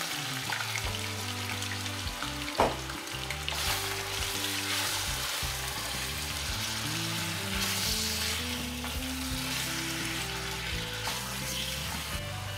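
Marinated pork spare ribs sizzling in hot caramel in a metal saucepan while being stirred with a spatula, with one sharp knock against the pan about two and a half seconds in. Soft background music plays underneath.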